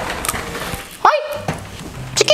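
A rough noisy stretch, then about a second in a short high yelping cry whose pitch rises sharply and falls back.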